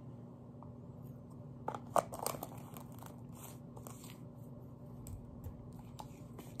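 A cosmetic jar being handled and its lid worked open: faint small clicks and crinkles, busiest about two seconds in.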